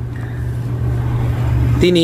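A steady low hum under a rushing noise that swells over about two seconds; a man's voice starts near the end.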